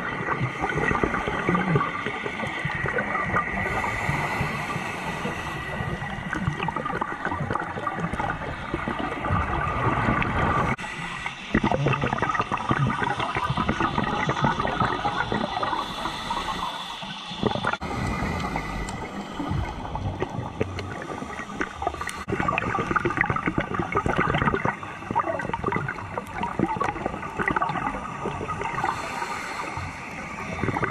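Heard underwater: a scuba diver's regulator breathing and exhaled bubbles gurgling and rushing, with a couple of brief lulls.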